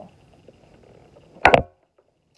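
A sharp double clack about one and a half seconds in, as the plastic seat and wire frame of a Bright Starts baby swing are knocked together while being fitted in assembly.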